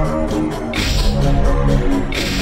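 Electronic music: held low synth notes stepping from pitch to pitch under a hissing noise wash that fades out and back in about halfway through.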